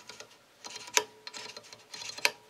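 Small enlarger part handled between the fingers: light clicks and rustling, with one sharper click about a second in. A faint steady tone comes in about halfway through.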